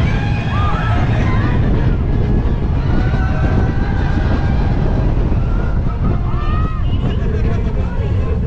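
Incredicoaster's steel roller-coaster train running at speed: a loud, steady rush of wind and track rumble. Riders' screams rise over it a few times.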